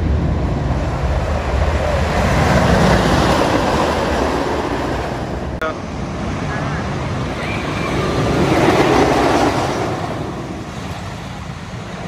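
The Voyage wooden roller coaster's train rumbling along its wooden track, swelling loud twice and then fading, with wind buffeting the microphone.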